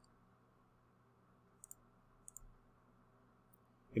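Faint clicks of a computer mouse button: one a little under two seconds in, then two more close together about half a second later.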